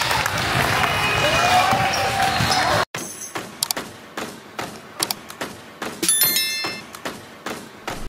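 Gym sound of a basketball game, with voices and a ball bouncing on the court, cut off suddenly about three seconds in. Then come the sound effects of an animated subscribe button: a string of short clicks and a brief ringing chime near the end.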